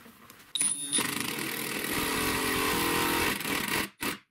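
Power drill/driver running under load as it screws a threaded hex-drive insert nut into plywood, starting about half a second in with a brief whine and running steadily until it stops just before the end.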